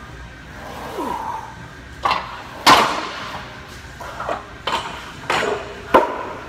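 Iron weight plates on a plate-loaded leg press clanking: a series of sharp metal clanks, irregularly spaced, the loudest a little before halfway.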